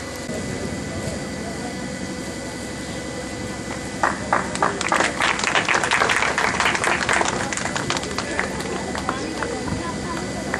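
Audience clapping that starts about four seconds in and dies away a few seconds later, over a steady background of crowd voices.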